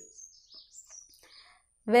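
Small birds chirping faintly in the background, a few thin high notes. A woman's voice starts near the end.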